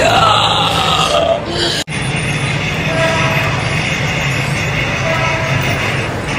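Sound from Halloween animatronic props on a haunt-convention floor: a voice-like sound that glides in pitch in the first second and a half, over a steady low hum and hall noise. An abrupt cut about two seconds in, after which the hum and hall noise carry on.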